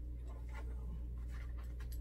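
Soft rustling and handling of paper and fabric pieces on a table, a few faint scuffs over a steady low hum.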